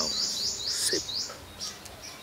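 A small bird chirping in a quick series of short rising notes, about four a second, which stops a little over a second in.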